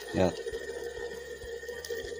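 Angle-grinder armature spinning on a 12-volt supply under the pull of a speaker magnet held close to it, a steady whine: the quick test of whether the armature windings still work.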